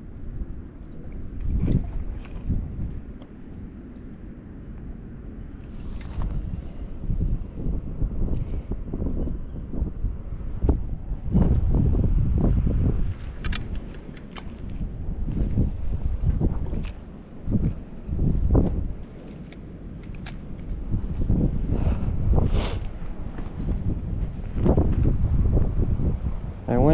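Wind buffeting the microphone in uneven gusts, a low rumble that swells and drops, with scattered sharp clicks from handling the line and rod.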